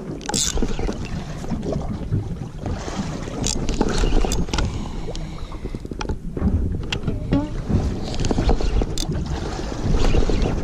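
Wind buffeting the microphone over water lapping around a small fishing boat, with scattered sharp clicks and knocks from a rod and spinning reel being handled.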